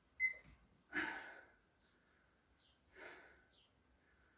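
A person breathing hard while holding a side plank, with sharp, noisy exhales about a second in and again about three seconds in. A brief high squeak comes right at the start.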